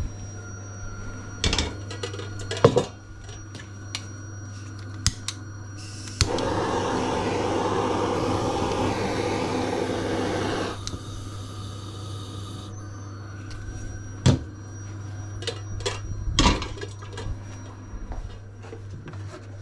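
Handheld butane kitchen blowtorch lit about six seconds in, its flame hissing steadily for about four and a half seconds before it stops suddenly. A few sharp knocks of cupboard and kitchen handling come before and after it.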